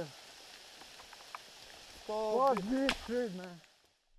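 Faint steady background hiss with a few small clicks. About halfway through, a man speaks for a second and a half. The sound then cuts to dead silence just before the end.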